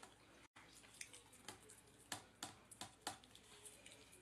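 Faint, sharp clicks and taps, about six of them spread over a few seconds, as someone eats cat food with a spoon from a metal can.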